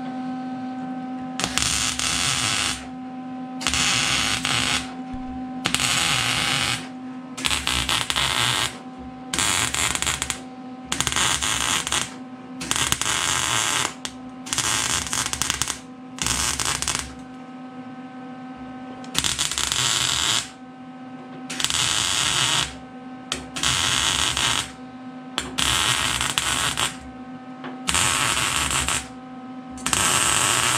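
Welder arc crackling in short bursts of about a second each, some sixteen in a row with brief pauses between, as the cab corner is stitch-welded; a steady electrical hum carries on underneath.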